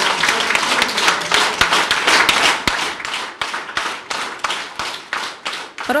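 Applause from a small group of people clapping, dense at first and thinning out to scattered individual claps over the last few seconds.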